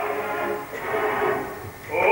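Male operatic voice in sung recitative, declaimed more than sustained, with orchestral accompaniment.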